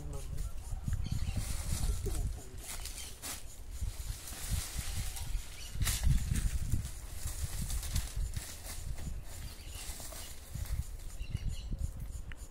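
A garden hoe chopping and scraping into soft soil: a series of uneven strikes, the sharpest about six seconds in, over a low, uneven rumble.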